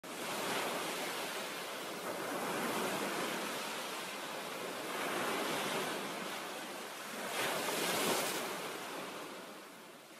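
Ocean waves washing in, swelling and ebbing about every two and a half seconds, then fading out near the end.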